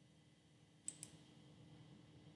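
Near silence with two faint computer mouse clicks in quick succession, about a second in.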